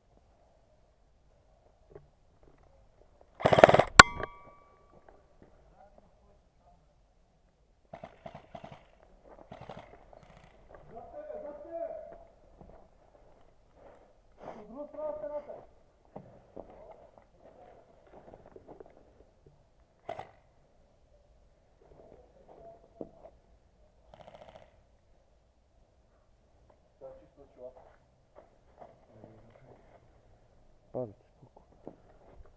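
A short, loud burst from an airsoft rifle about three and a half seconds in, ending in a sharp click. Faint, muffled voices come and go through the rest.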